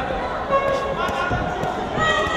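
Live boxing bout in a large hall: spectators' voices and shouts over a few dull thuds from the ring, the sharpest about half a second in.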